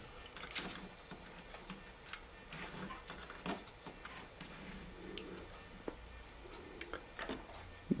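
Faint scattered clicks and taps of a small plastic N scale caboose being handled and set onto model railroad track by hand and with a tool, with a soft rustle of handling between them.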